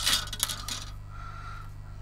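Hard plastic model-kit sprues clicking and clattering against each other as they are handled and set down, mostly in the first half second, then quieter rustling.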